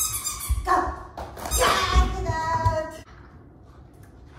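A dog barking in play, several calls over the first three seconds, with dull thumps of running feet on the floor.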